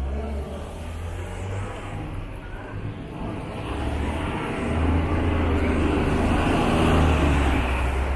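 A motor vehicle running close by in street traffic: a low engine rumble with tyre and road noise that grows louder and peaks about five to seven seconds in.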